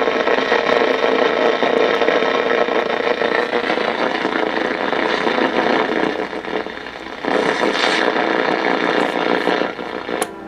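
1970 Motorola solid-state AM/FM clock radio hissing with static as its tuning dial is turned between stations. The hiss drops briefly about seven seconds in, then comes back.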